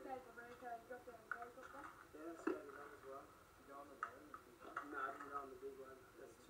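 Indistinct talking played back through a television's speaker and picked up in the room, with one sharp click about two and a half seconds in.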